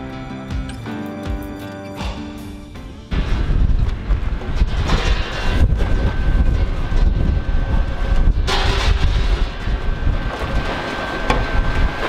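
Acoustic guitar background music for about three seconds, then a sudden cut to loud outdoor live sound. That part is a low rumble of wind on the microphone, with two short knocks as a sheet of aluminium is handled.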